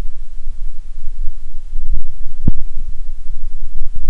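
Wind buffeting a camera microphone: a loud, low, uneven rumble. A couple of knocks from handling or footsteps stand out, the sharpest about two and a half seconds in.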